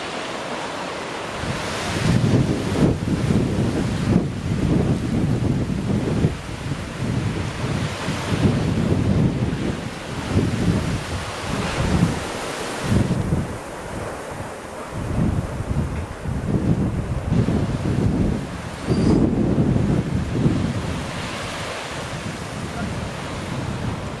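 Strong wind gusting across the microphone in uneven surges, over a steady wash of surf from a stormy sea.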